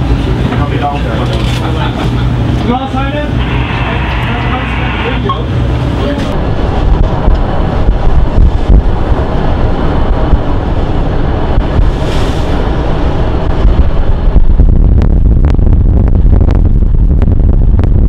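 Wind buffeting the microphone with the rush of the sea, on the deck of a ship under way, and voices in the first few seconds. The wind grows stronger after about fourteen seconds, with a few sharp knocks near the end.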